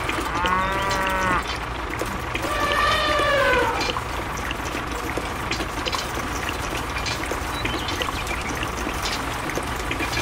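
Two drawn-out cow moos, each about a second long and rising then falling in pitch, the second about two seconds after the first. Beneath them runs a steady low hum and the soft, even sound of wet concrete pouring from a toy truck's chute.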